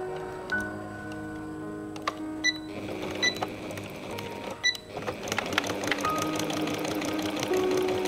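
Electric sewing machine stitching through fabric strips at a fast, even rate, starting about five seconds in, with a few sharp clicks before it. Soft piano background music plays throughout.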